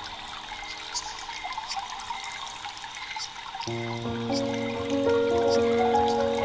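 Slow ambient music of long held chords over a steady trickle of water. A little over halfway through, a new, louder chord with a deep bass note comes in.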